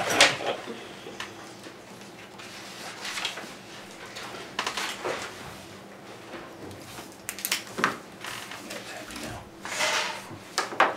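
Papers rustling and pens scratching as several people sign documents at a table, with sheets handled and turned over in a few short rustles.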